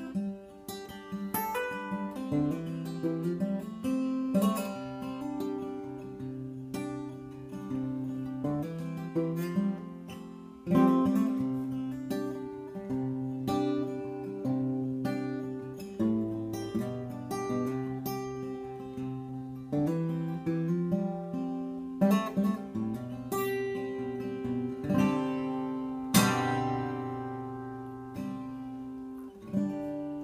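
Avalon L201C jumbo all-solid-wood acoustic guitar, capoed at the fifth fret, played unplugged in a mix of picked single notes and strummed chords, with a few harder strums along the way.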